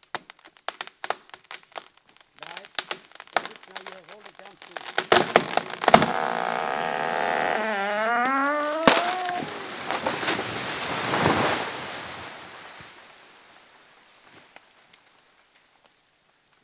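Large tree being felled: the trunk cracks and splinters in sharp snaps that come faster and faster, then the tree comes down with a long loud crash through the branches that peaks twice and dies away. A man gives a rising shout as it falls.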